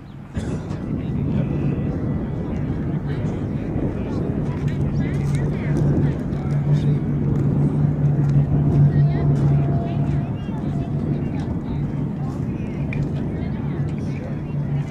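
A Boeing B-29 Superfortress's four Wright R-3350 radial engines droning as the bomber flies low past. The deep, steady drone starts abruptly, grows louder to a peak around the middle as the aircraft comes overhead, then eases slightly.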